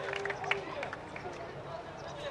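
Players' voices calling out on an outdoor football pitch, short and indistinct, with several sharp clicks over open-air ambience.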